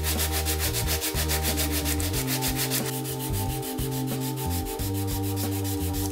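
Wooden body of a Japanese hand plane rubbed back and forth on sandpaper over a flat board in quick, even strokes, flattening the plane's sole. Organ music plays underneath.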